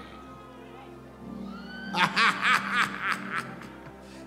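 Soft, sustained worship music with a run of about six short bursts of laughter starting about two seconds in, preceded by a voice rising in pitch.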